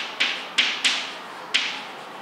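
Chalk writing on a blackboard: about five sharp taps of the chalk at an uneven pace, each trailing off in a short scratch.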